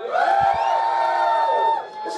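A single voice holding one long, steady wordless shout for about a second and a half.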